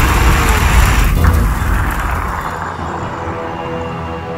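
Dragon sound effect: a loud rush with a deep rumble that fades away over about two seconds. Background music with sustained tones then carries on.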